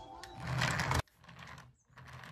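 Small electric motor and plastic gears of a toy remote control car whirring: one louder burst in the first second that cuts off suddenly, then faint short bursts about every half second.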